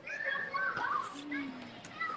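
Children's voices calling out and chattering in the background of a basketball court, loudest in the first second and a half.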